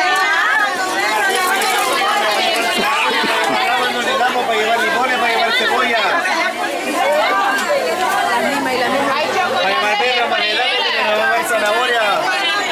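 Crowd chatter: many overlapping voices of shoppers and vendors talking at once in a busy open-air market, a steady babble with no single voice standing out.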